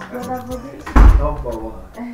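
A door bangs shut once, a loud sudden thump about a second in, with a voice heard around it.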